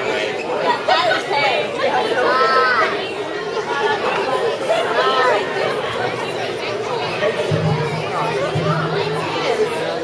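Many children and adults chattering at once in a large hall, a steady crowd murmur with no single voice clear.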